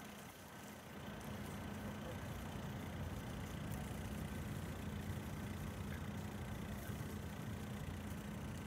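A steady, low mechanical hum like an engine running at idle, growing a little louder about a second in.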